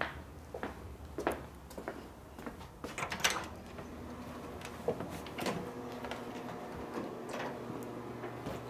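A storm door and then an inner door being opened and passed through: a run of latch clicks and knocks, the loudest cluster about three seconds in. A faint steady hum follows from about halfway.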